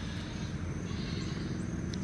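Gloved hands pressing and patting garden soil around a newly planted basil seedling: a faint, soft rustle of soil over a steady low outdoor rumble.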